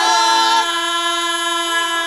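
The final held chord of a devotional chant: wavering sung voices stop about half a second in, leaving several steady tones sustained together.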